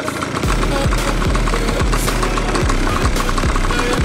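Old, worn motorcycle riding over a rutted dirt track: the engine runs steadily, with irregular low thumps as the bike jolts over the bumps.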